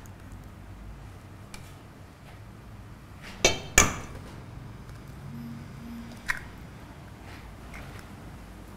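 An egg knocked twice against the rim of a stainless steel mixing bowl to crack it: two sharp knocks half a second apart with a brief metallic ring, then a smaller click a few seconds later.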